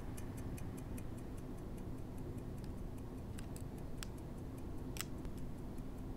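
Mechanical watch ticking rapidly and evenly, with a few louder clicks in the second half, over a faint low hum.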